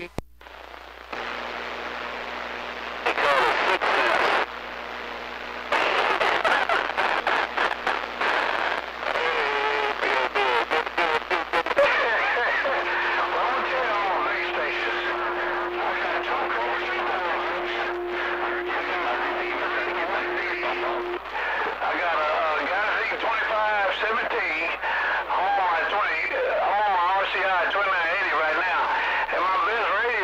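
CB radio receiver playing incoming transmissions: a low hum and bursts of static at first, then garbled, warbling voices that carry on to the end. A steady whistle tone sits under the voices for several seconds in the middle.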